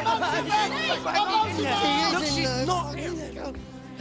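Several voices singing together over musical accompaniment with held bass notes. The music thins and gets quieter near the end.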